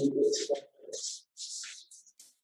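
A woman's voice trailing off in a drawn-out vocal sound over the first half second or so, then faint breathy hiss sounds.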